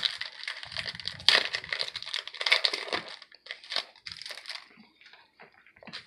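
Foil wrapper of a Contenders basketball card pack being torn open and crinkled. The crackling is dense for about the first three seconds, then thins to scattered crackles and clicks.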